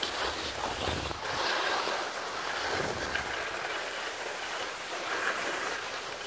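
Skis sliding over packed snow in a steady hiss, with wind buffeting the microphone in low rumbles now and then.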